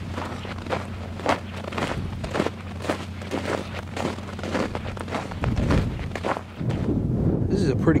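Boots walking over snow and broken shore ice, about two steps a second. About five and a half seconds in, a gust of wind buffets the microphone for about a second.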